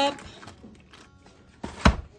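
Golden raisins being tipped into a mixing bowl of broccoli salad, with soft handling noise and a short, sharp knock near the end.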